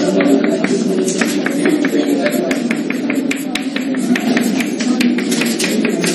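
Chalk tapping on a chalkboard in quick succession, about four or five sharp clicks a second, as short tick marks of a scale are drawn. A low murmur of voices runs underneath.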